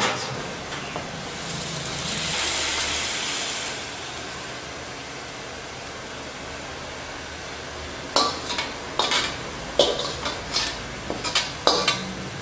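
Hot wok set down with a knock, then a high sizzle from the freshly stir-fried pork belly that swells and fades over a few seconds. Near the end, a metal ladle clinks and scrapes against the wok and a stainless steel tray as the food is scooped out.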